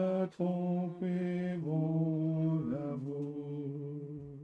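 Hymn singing: a slow melody in long, held notes that changes pitch a few times and ends the line on a sustained note.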